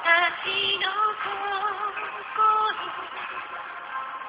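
Music: a woman singing a slow melody, her notes wavering with vibrato over soft accompaniment. It is a radio broadcast recorded on a phone's voice recorder, so it sounds muffled, with no high end.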